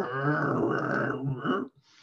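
A man's long, rasping, growly vocal sound imitating an animal grumbling in its sleep, breaking off about a second and a half in.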